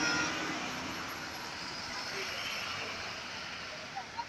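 Fire engine and fire-service van engines running as they drive past, heard as steady engine and road noise that eases slightly after the first half second.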